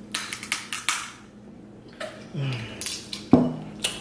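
Messy eating of snow crab from a seafood boil: a quick run of sharp clicks and snaps of shell in the first second, a short low hum of a voice about halfway, and one sharp crack a little before the end.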